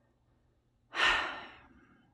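A woman's single audible breath about a second in, starting sharply and fading away over most of a second, after a near-silent pause in her talk.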